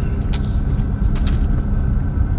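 Car cabin noise while driving slowly: a steady low rumble of engine and road, with a few light metallic clicks and jingles above it.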